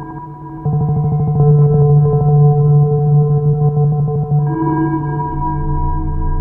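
Live electronic music from a hardware synth rig of monome Norns and Eurorack modules: steady, ringing drone tones under a fast, glitchy stuttering pulse. The stutter stops about four and a half seconds in, the tones change, and a low bass tone comes in near the end.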